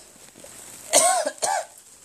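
A young man coughs twice in quick succession about a second in.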